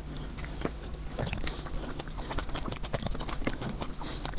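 Close-miked chewing of soft jelly: a steady run of small, wet mouth clicks and squishes.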